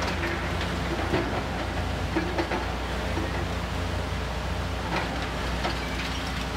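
High-reach demolition excavator at work: a steady low engine hum, with scattered cracks and clatter of breaking building material and falling debris, most marked near the start, about two seconds in and near the end.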